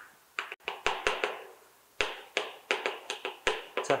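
Chalk tapping and scratching on a blackboard as characters are written by hand: an irregular run of more than a dozen sharp little taps, with a short pause partway through.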